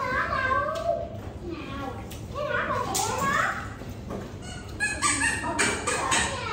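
Several people talking over one another in indistinct conversation, with a few short clicks about five seconds in.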